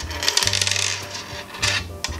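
Small metal paper clips, binder clips and screws clinking as they are set down and sorted on a tabletop, a quick run of clicks through most of the first second and a half. Background music plays underneath.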